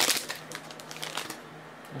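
Foil trading-card pack wrapper crinkling and cards sliding against each other as they are pulled out by hand: a burst of sharp crinkles at the start that thins to soft rustling.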